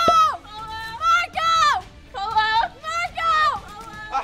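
A young woman squealing in a string of short, very high-pitched cries, about six in a row, each rising and falling in pitch.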